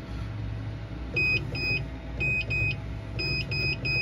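Seven short electronic beeps from the laser engraver, in quick groups of two, two and three, over the machine's steady low hum.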